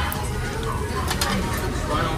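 Restaurant background chatter from diners, with a few short clicks a little after a second in.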